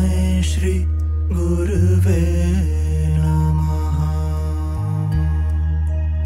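Devotional mantra chanting: a sung voice winds through a phrase over a steady low drone, then gives way about two and a half seconds in to sustained, held tones.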